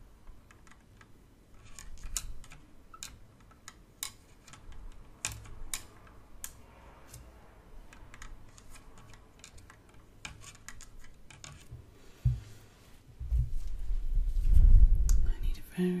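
Close-miked ASMR handling sounds from gloved hands and wooden sticks: scattered small clicks and taps, then a louder, low, rumbling brush against the microphone about thirteen seconds in.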